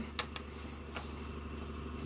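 Steady low hum of room tone in a pause between words, with a couple of faint ticks just after the start.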